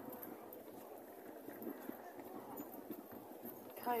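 Quiet outdoor street background noise with a few faint, irregular clicks or taps.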